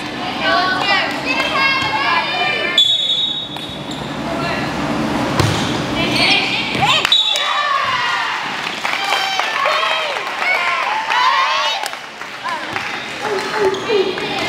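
Volleyball players and onlookers calling and shouting in high voices during a rally, with a few sharp thuds of the ball being struck.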